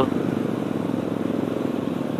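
Kawasaki D-Tracker 150 SE's single-cylinder four-stroke engine running steadily while the bike is ridden.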